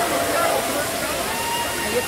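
Tiered waterfall cascading over rock terraces: a steady rush of falling water, with voices of people talking in the background.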